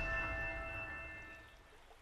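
Chime notes of a short logo jingle ringing on and fading away, dying out about a second and a half in.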